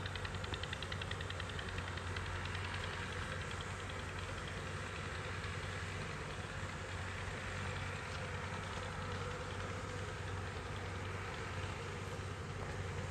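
Italian honey bees buzzing as they fly in and out of a wooden hive's entrance, a steady, even drone.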